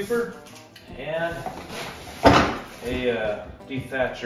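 A man talking, with one sharp knock on a cardboard shipping box a little over two seconds in.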